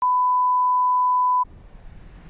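A steady electronic test tone, the kind played with TV colour bars, holding one pitch for about a second and a half and cutting off suddenly. A faint steady hiss follows.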